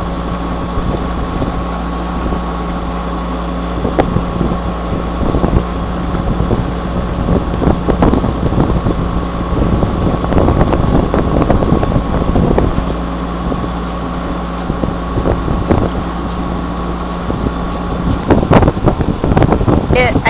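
A sailboat's engine running steadily under way, a constant low hum, with wind buffeting the microphone at times through the middle stretch.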